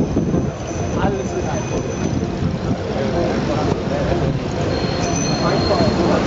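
A large crowd of cyclists riding together: a steady low rumble of wind on the microphone and rolling bikes, with many riders' voices calling and talking around, and a couple of brief thin high tones.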